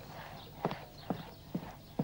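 Quiet footsteps on a wooden floor: four soft knocks, about two a second.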